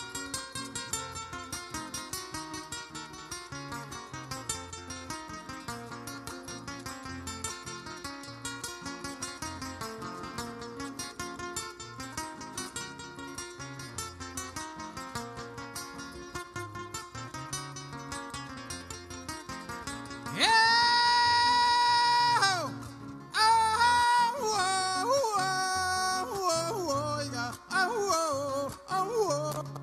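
Acoustic guitar playing a steady, rhythmic strummed and plucked accompaniment for Panamanian décima singing. About two-thirds of the way through, a man's voice comes in much louder with one long held high note, then a wavering, sliding sung line.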